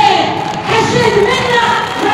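A woman's impassioned, high-pitched raised voice through a public-address system in a large, reverberant hall, with crowd noise underneath.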